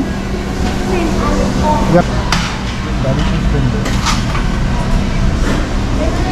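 Busy fast-food counter: muffled background voices over a steady low hum and rumble, with a few sharp clicks.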